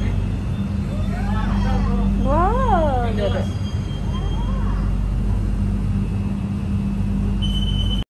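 Inside a Palembang LRT electric train car: the carriage's steady running hum and rumble. About two to three seconds in, a voice rises and falls in pitch, and near the end a steady high beep starts.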